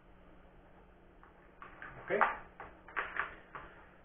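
A handful of light clicks and taps of small objects being handled and set down on a workbench, starting about a second and a half in, over a faint steady low hum.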